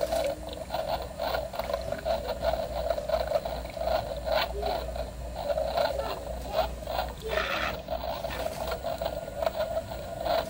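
Animated Halloween fishbowl decoration with skeleton fish, switched on and playing its sound effect through its small speaker: a steady mid-pitched hum broken by quick, irregular pulses.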